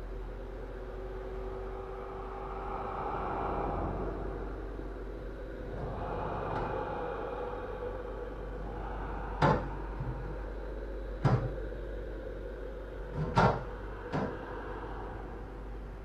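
Four sharp knocks in the second half, spaced one to two seconds apart, over a steady low hum.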